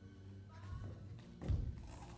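Dull thuds of a dancer's feet and body on a wooden studio floor as he drops down to the ground, the loudest about one and a half seconds in.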